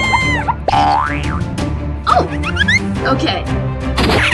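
Background music with cartoon sound effects laid over it: a boing and several quick sliding pitch glides, rising and falling.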